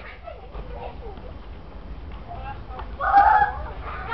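Human voices calling out, with one loud shout about three seconds in.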